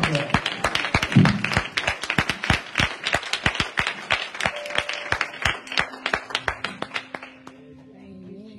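Hands clapping, a fast run of claps that thins out and stops about seven seconds in.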